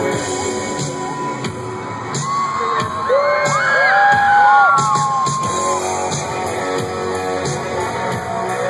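Rock band playing live through a stadium PA, an instrumental stretch led by electric guitar, recorded from within the crowd. Several pitched notes slide up and down in the middle.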